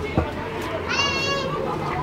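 A child's high-pitched voice calling out briefly about a second in, over a steady background of distant voices, with a short knock near the start.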